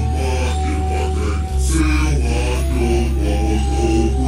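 Slowed-down (screwed) hip-hop track: a deep, steady bass line that moves to a new note about a second and a half in, regular drum hits, and a low, drawn-out rap vocal.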